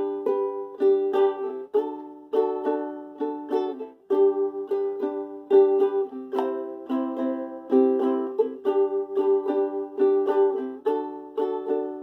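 Ukulele strumming, switching chords every second or two.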